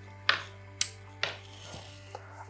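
Three sharp clicks about half a second apart, from the ozone generator setup being switched off, over soft background music.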